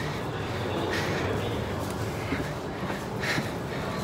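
Steady low hum and rush inside a Shinkansen car's vestibule, with a couple of faint brief soft sounds, one about a second in and one a little after three seconds.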